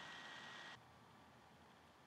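Near silence: faint microphone hiss with a thin high whine, dropping to an even lower hiss a little under a second in.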